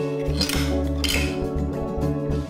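Background music led by a plucked acoustic guitar, with two brief scratchy high sounds about half a second and a second in.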